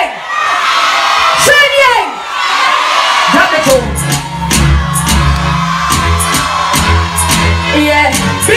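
Live concert sound: a woman's voice over the PA amid crowd whoops and cheering, then a bass-heavy dancehall backing track with a steady beat comes in about three seconds in.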